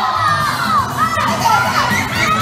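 A crowd of children shouting and cheering excitedly, many high-pitched voices overlapping.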